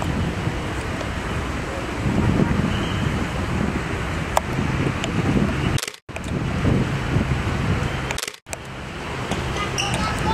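Wind buffeting the camera microphone: a steady, low, rough rushing noise that breaks off for an instant twice, about six and eight and a half seconds in.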